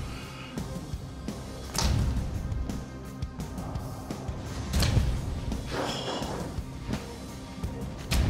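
A heavy pandat chopper blade chopping into a hanging pig carcass: two strikes about three seconds apart, each a whoosh and a thud, over background music.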